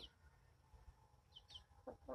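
Near silence in a chicken run, broken by two faint, quick high chirps about one and a half seconds in and the first low cluck of a hen just before the end.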